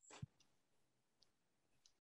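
Near silence with a few faint clicks from a computer's controls: one with a soft knock just after the start, then two more, the last near the end.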